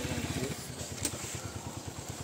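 Motorcycle engine idling with a steady, rapid low putter. A single sharp click comes about a second in.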